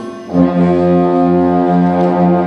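High school band playing a big band jazz number: the winds and brass come in together about a third of a second in and hold one long, loud chord.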